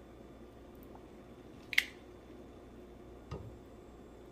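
Kitchen tongs lifting noodles from a bowl: one sharp click a little under two seconds in and a softer knock past the three-second mark, over quiet room tone.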